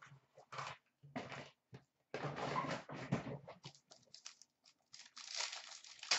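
Plastic wrapping on a pack of hockey cards being torn open and crinkled by hand, in irregular crackly bursts with a longer stretch of tearing about two seconds in and more near the end.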